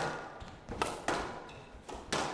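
A squash ball being struck by rackets and hitting the court walls during a rally. One sharp hit comes at the start and two more come close together about a second in, each with a short echo.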